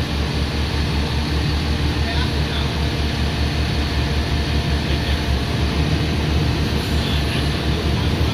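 Aerial ladder truck's diesel engine running steadily to power the ladder hydraulics while the ladder is moved: a low, even rumble.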